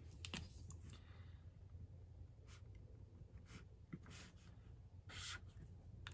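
Faint clicks and short scratchy strokes of a felt-tip marker being handled and drawn on notebook paper, with a longer stroke about five seconds in.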